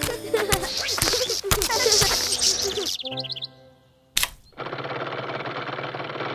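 Cartoon sci-fi sound effects of a levitation beam carrying a refrigerator: dense warbling, chirping electronic sound for about three seconds, then a wobbling tone that fades away. Just after four seconds comes a single sharp thud as the fridge is set down, followed by a steady noisy hum.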